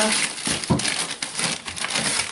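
Plastic food packaging crinkling and rustling as frozen packages are handled inside a chest freezer, with a dull knock about a third of the way in.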